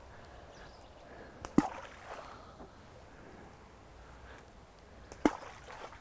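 Two balls of fishing groundbait plopping into the canal water, the first about a second and a half in and a sharper one near the end, as the swim is baited beside the reeds.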